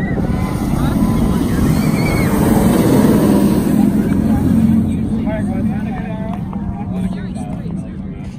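Fury 325, a Bolliger & Mabillard steel giga coaster, roaring past as its train runs along the track. The rumble swells to a peak about three seconds in and then fades as the train climbs away.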